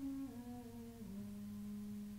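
A single unaccompanied voice chanting, its pitch stepping down and settling about halfway through on a long held low note.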